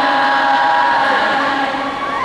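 Arena audience voices with a few long, steady held notes, like a crowd singing together.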